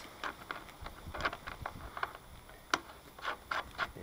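Small metal clicks and scrapes of a nut being tried on a threaded fitting on a plastic fuel tank: several irregular ticks, the sharpest about three-quarters of the way through.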